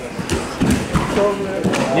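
Men's voices shouting during a grappling match, with several dull thuds of bodies hitting the mat as one grappler is brought down.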